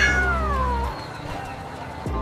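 A frightened kitten's meow: one long, plaintive call at the start that falls steadily in pitch over about a second.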